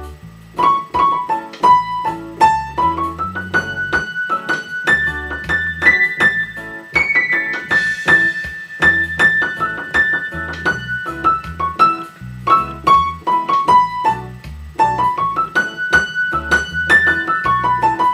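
Piano playing an improvised single-note solo on the A major pentatonic scale, notes stepping up and down in short phrases, over a reggae backing track with a steady, repeating bass line.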